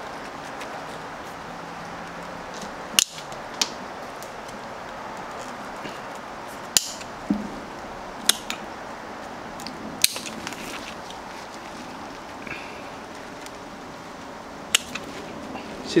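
Bonsai pruning shears snipping through Lebanon cedar twigs: about eight sharp single snips at irregular intervals, a few in quick pairs, over a steady background hiss.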